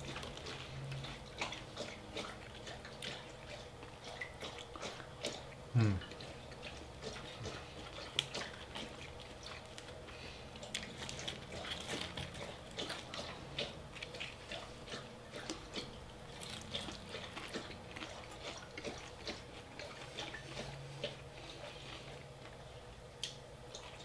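A dog lapping water from its bowl: a long run of small wet clicks. A short hummed 'hmm' about six seconds in.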